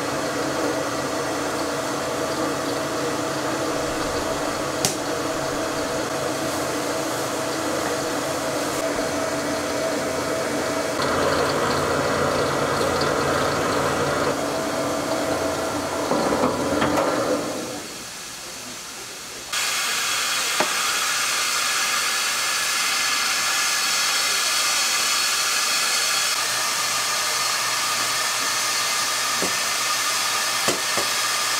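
Stainless-steel electric rice-flour mill running steadily as it grinds rice into flour, with a humming motor. About two-thirds of the way in it stops, and after a short lull a steady hiss of steam from a rice-cake steamer takes over.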